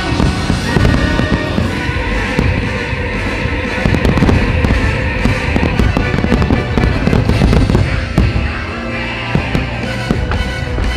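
A dense, rapid barrage of aerial fireworks shells bursting and crackling over loud orchestral show music, with a single sharp loud bang about eight seconds in.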